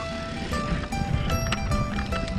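Background music: a run of sustained notes, several starting together every fraction of a second, over a steady low rumble.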